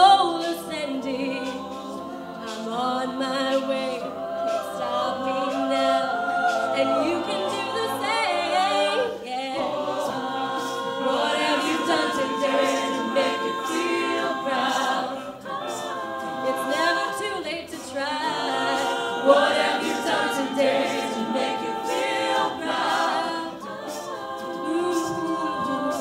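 A co-ed a cappella group singing: a female lead voice over sustained backing harmonies from the rest of the group, with no instruments.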